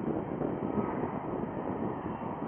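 Steady rushing roar of a jet airliner on approach, the Boeing 787-9's engine noise heard from the ground, growing louder right at the start, with wind buffeting the microphone.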